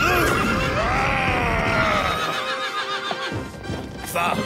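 A horse whinnying: one long, wavering neigh that fades out by about halfway through, with music underneath.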